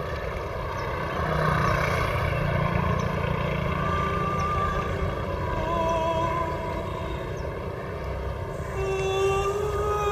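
A boat engine's low steady drone, with music fading in a few seconds in: long wavering melodic notes that grow stronger near the end.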